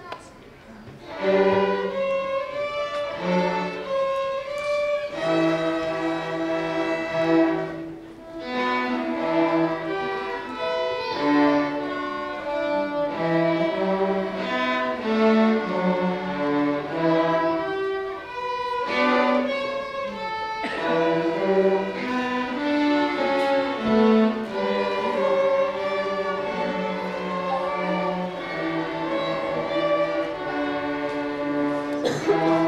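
Student string orchestra of violins and cellos playing an original Celtic-style dance in E Dorian mode. The music starts about a second in and moves in phrases, with brief breaks between them twice.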